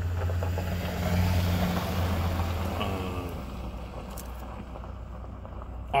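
A car passing by on the road, heard from inside a parked car: its tyre and engine noise swells about a second in and fades away by about four seconds in, over a steady low hum.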